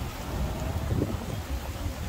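Wind buffeting the microphone in a low, uneven rumble, with a few faint clops of horses walking on a paved path.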